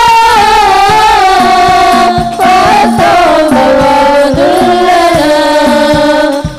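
Female voices singing an Islamic sholawat through a PA in long, held, ornamented lines, over hadroh frame drums (rebana) struck in a steady rhythm.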